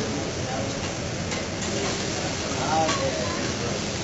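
Rice and vegetables sizzling on a steel teppanyaki griddle as a steady hiss, with a few sharp scrapes and taps of a metal spatula on the plate.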